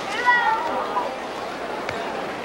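A high-pitched human call lasting about a second, its pitch falling, heard over the steady murmur of an arena crowd. A single sharp click near the end.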